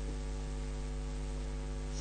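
Steady electrical mains hum with evenly spaced overtones, an even drone with no change in pitch or level, picked up by the recording setup.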